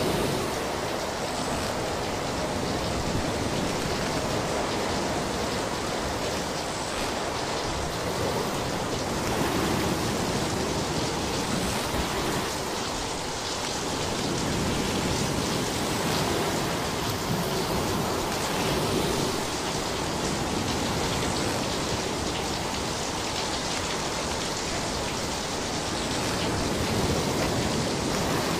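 Steady rushing water noise with slow rises and falls in level.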